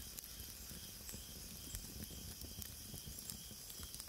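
Faint, steady hiss with scattered soft ticks: a low background noise bed.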